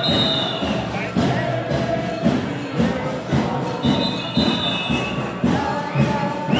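Street march with a steady beat of drums, about one beat every half-second or so, over crowd noise. Twice a long shrill high note sounds, near the start and about four seconds in.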